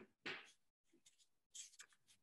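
Near silence on a video-call line, with a few faint, brief rustling noises.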